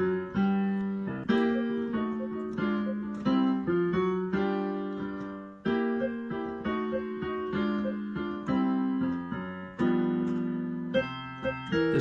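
Piano playing a blues chorus: a left-hand bass pattern under right-hand seventh chords struck in short, repeated stabs that anticipate the beat, each chord fading before the next.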